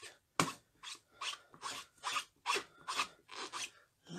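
Rapid rubbing strokes of a hand working over a clear plastic rubber-stamp case, about two or three a second. The first stroke is the sharpest and loudest.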